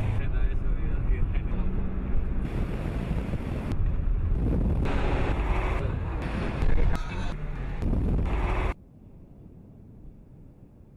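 A road vehicle running, with wind buffeting the microphone, in loud sections that change abruptly. It cuts off sharply about nine seconds in to a faint hiss.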